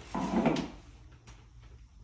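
A short rumbling scrape of the adjustable bed base's frame being shifted and handled, lasting about half a second near the start.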